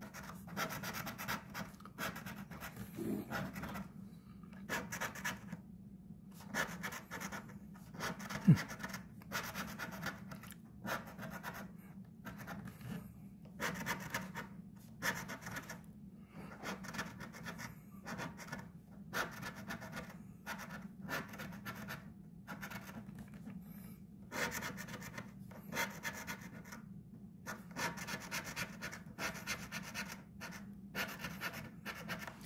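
A metal coin scratching the coating off a paper scratch-off lottery ticket, in repeated bursts of quick strokes with short pauses between them. There is one sharp tap about eight seconds in, and a low steady hum underneath throughout.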